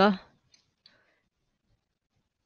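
The end of a spoken word, then two short faint clicks about a third of a second apart.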